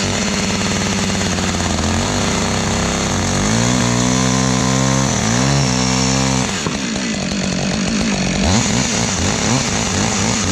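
Two-stroke Husqvarna chainsaw running at idle. It is revved up about three seconds in and held high for about three seconds with a brief dip, then drops back to a rough idle.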